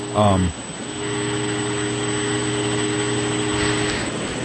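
Electric fan kicking back on about a second in, then running with a steady hum and hiss that sounds like a train.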